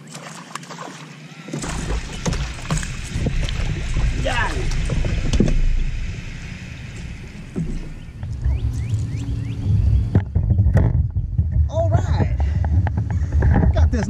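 A spotted bass being fought and landed at a kayak: splashing and line and handling noise, with low rumbling on the microphone from about two seconds in that grows stronger after the middle.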